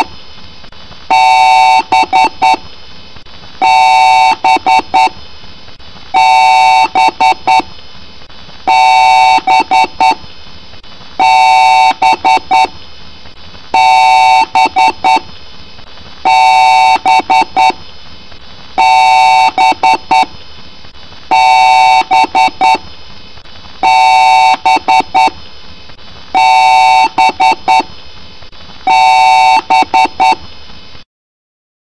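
Computer start-up beeps in a loud, repeating pattern: one long beep followed by about three short ones, again roughly every two and a half seconds, about a dozen times. The pattern is that of a PC's POST beep code, and it sounds pitch-shifted and layered by audio effects.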